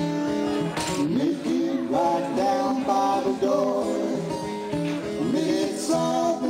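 Acoustic guitar playing an instrumental blues passage, with some notes sliding in pitch.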